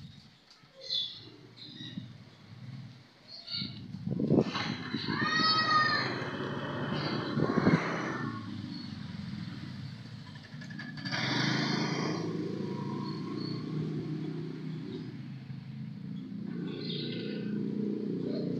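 An engine running steadily, a low drone that comes in about four seconds in and holds on, with a short high call about five seconds in.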